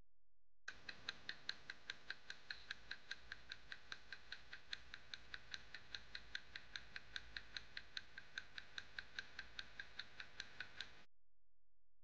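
Countdown timer sound effect: quick, even clock-like ticks, about five a second, running while the answer time counts down, and stopping about a second before the answer is shown.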